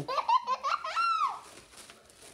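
A young child laughing in a few quick high-pitched bursts, ending in a longer squeal that rises and then falls in pitch a little over a second in.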